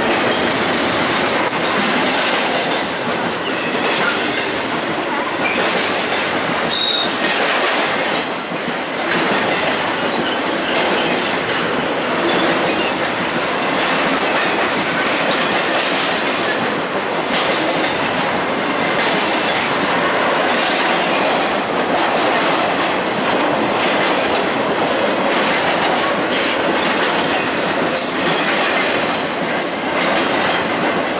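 Intermodal freight cars rolling steadily past close by, their wheels clacking over the rail joints, with a brief high wheel squeal now and then.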